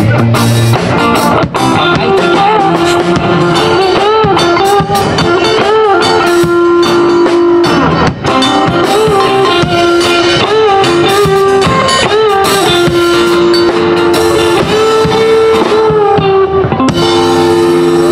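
Live reggae band playing an instrumental passage: electric guitar lead with bent notes over acoustic guitar and drum kit, settling into held notes near the end.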